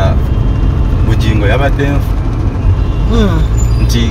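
Steady low rumble of a Toyota car on the move, heard from inside the cabin: engine and road noise under the driver's voice.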